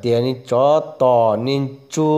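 A man's voice chanting in a sing-song delivery: four drawn-out syllables whose pitch slides up and down, with brief breaks between them.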